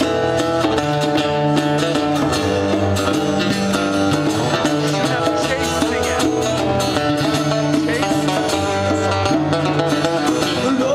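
Acoustic guitar strumming chords in a live acoustic rock performance, steady throughout.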